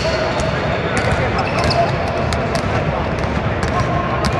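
Basketballs bouncing on a hardwood court, as short, irregularly spaced thuds over a steady background of voices.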